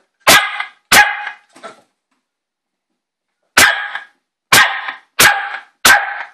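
A puppy barking at a remote control that seems to have startled her: two sharp barks and a faint third in the first two seconds, then after a pause of about two seconds, four more in quick succession.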